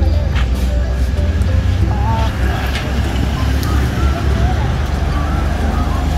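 Steady low rumble of outdoor background noise, with faint voices in the background.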